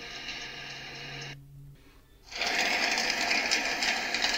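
A steady mechanical whirring noise that drops out almost completely for under a second, about a second and a half in, then returns louder.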